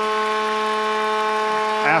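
Arena goal horn sounding a steady, unchanging multi-note chord, signalling a home-team goal, over a wash of crowd noise.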